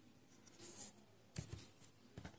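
Faint scratching of a felt-tip marker on paper, then a short soft knock about one and a half seconds in.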